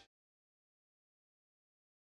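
Silence: the soundtrack has ended.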